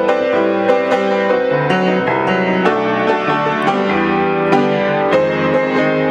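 Solo jazz piano played with both hands, full chords struck every half second to a second.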